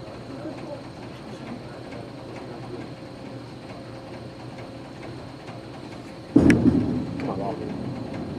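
Bowling alley ambience: a steady low rumble of balls rolling and pins falling on other lanes. About six seconds in, a loud thud as a bowling ball is released onto the lane, followed by the rumble of it rolling away.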